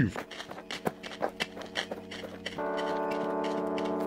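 Hurried footsteps sound effect: a quick, uneven run of light steps. About two and a half seconds in, a sustained synthesizer chord comes in and holds under the last steps.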